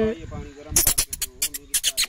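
Eurasian hobby falcon flapping its wings on a leather falconry glove: about halfway through, a quick run of sharp feather rustles.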